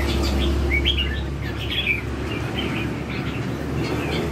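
Caged red-whiskered bulbuls singing a run of short, quick chirping notes, over a steady low background hum.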